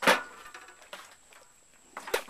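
A sudden knock, fading quickly, then a few faint clicks and rustles.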